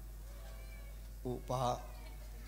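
A man's voice through a microphone: a faint drawn-out sound with a wavering pitch early on, then a short spoken word of two syllables about a second and a half in, over a low steady hum from the sound system.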